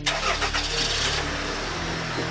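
A car engine comes in suddenly and keeps running loudly, with background music underneath.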